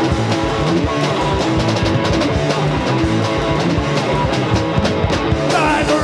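Hardcore punk band playing live: electric guitar, bass and a fast, steady drumbeat, with a voice coming back in near the end.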